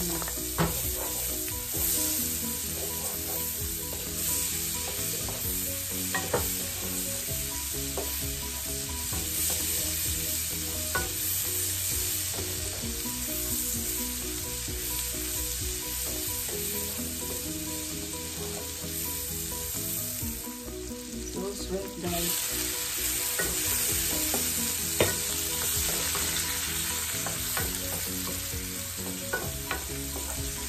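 Butter sizzling and spitting in a nonstick frying pan as diced red onion and garlic fry, with a wooden spoon stirring and scraping and now and then tapping the pan. The sizzle changes and grows a little brighter about two-thirds of the way through.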